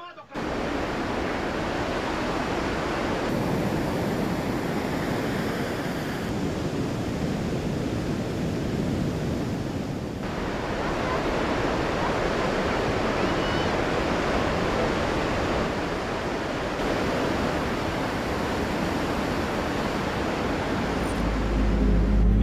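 Steady rushing noise of wind and sea waves, its texture shifting abruptly a few times.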